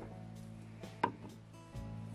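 Soft background guitar music, with a few light clicks and taps from the bobbin and thread as wraps are made at a jig-tying vise; the sharpest click comes about a second in.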